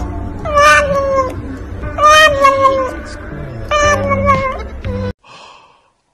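A cat meowing in about three long, drawn-out calls, each sliding slightly down in pitch; the sound cuts off suddenly about five seconds in.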